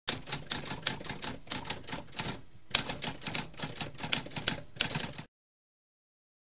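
Typewriter keys being struck in a rapid run of clicks, with a short pause about two and a half seconds in, cutting off suddenly a little after five seconds.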